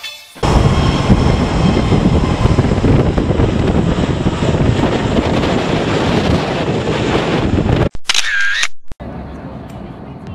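Loud, steady roar of an Airbus A320neo jet airliner's engines at takeoff, cutting off abruptly about eight seconds in. A short sound with gliding tones follows, and then a quieter stretch.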